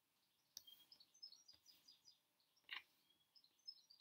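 Faint, repeated short high chirps of a small songbird outside. A few soft taps of cards being laid on a table come in between, the loudest about two-thirds of the way through.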